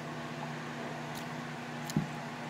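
Room tone with a steady low hum, then a short knock near the end as a glass tumbler is set down on a cloth-covered table.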